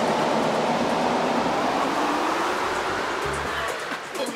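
Tech house DJ mix in a breakdown: the kick drum mostly drops out while a noise sweep slides downward in pitch and the level sags toward the end.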